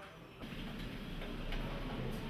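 Light clicking at a computer keyboard and mouse, over a steady room hiss.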